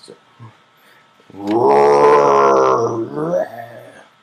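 A loud, drawn-out growl, about two seconds long, steady in pitch and then sagging and fading near the end.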